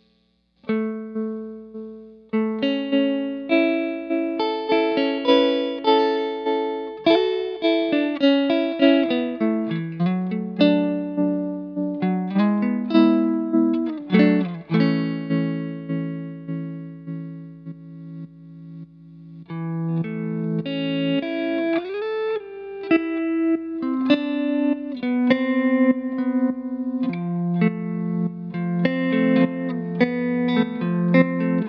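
Electric guitar played through a Mattoverse Electronics Inflection Point modulation pedal (tremolo/vibrato): picked notes and chords, each struck sharply and decaying, with a brief lull just past halfway before the playing picks up again.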